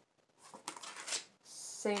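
Faint rustling and soft taps of a paper card being handled, a few short sounds between about half a second and just over a second in.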